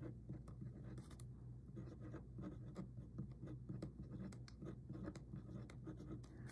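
Fine-tipped pen writing on a paper card: faint, quick scratching strokes as the words are written out, in an irregular rhythm.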